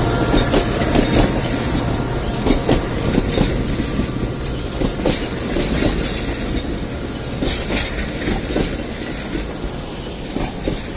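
A passenger train passing close by, its wheels clicking over the rail joints, the sound slowly getting quieter as it goes.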